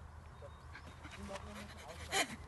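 Faint, indistinct voices over a low, steady rumble.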